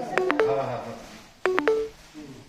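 Short electronic tones sounding twice, at the start and again about a second and a half in, each beginning with a sharp click and followed by a brief two-note tone, over background voices.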